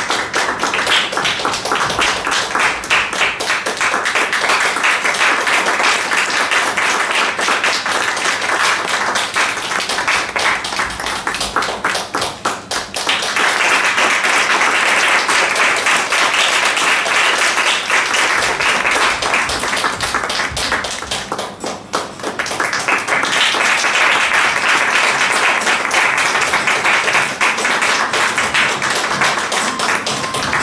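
Applause from a small audience at a curtain call: many hands clapping steadily. It thins out briefly twice, about a third and two-thirds of the way through, then swells again.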